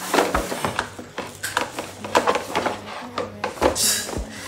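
Plastic makeup organizer being handled and fitted together: a run of small plastic knocks and clicks, with a brief scrape near the end.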